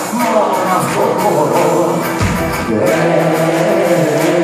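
Live band playing Greek folk-rock with a man singing: Cretan laouto, electric guitar, double bass and drums, with a deep bass swell about two seconds in.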